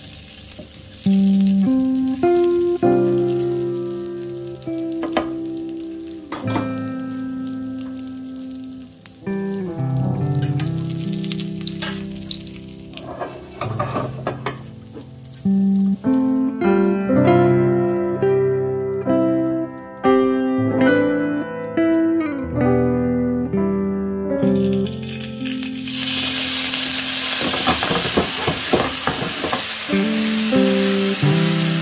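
Potatoes sizzling in oil in a frying pan under background instrumental music of slow notes that strike and die away. The frying hiss drops out for several seconds past the middle, then comes back loud near the end.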